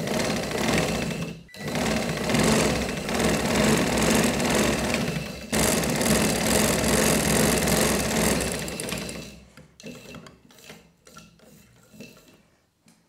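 Sewing machine running steadily while stitching cotton frock fabric, with a brief pause about one and a half seconds in. It stops about nine seconds in, and a few light clicks follow.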